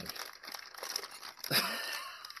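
Clear plastic zip-lock bags crinkling as they are handled and pulled apart, louder for the last half second.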